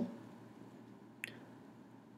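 Near silence with one brief faint click about a second in.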